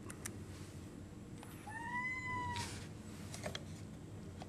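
A domestic cat meowing once, a call about a second long whose pitch rises and then falls slightly, near the middle.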